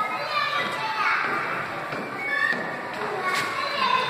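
A group of children's voices, high-pitched excited calling and chatter overlapping.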